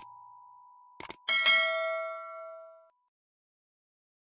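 Subscribe-button animation sound effect: two quick mouse clicks about a second in, then a bright notification-bell ding that rings out and fades over about a second and a half. A faint held tone fades away at the start.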